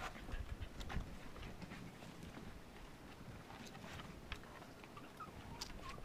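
Silken Windhound puppies moving about on the ground, heard as faint scattered pattering taps and rustling.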